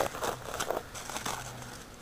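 Sneaker steps crunching and rustling through dry pine needles and leaf litter, a few light crackles and scuffs.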